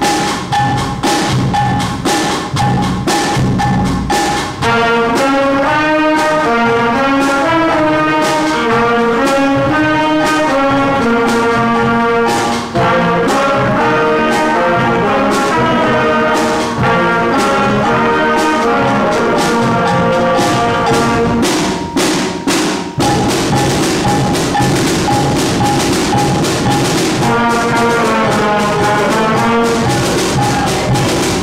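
Student pep band of brass, woodwinds and drums playing. The drums play alone for the first few seconds, then trumpets, trombones, clarinets and flutes come in with the tune. The drums carry a short break a little past two-thirds of the way through, and the horns return near the end.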